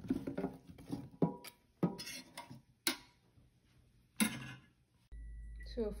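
Metal utensils clinking and scraping against a metal roasting pan: several separate sharp clinks. About five seconds in, this cuts off and a steady low hum begins.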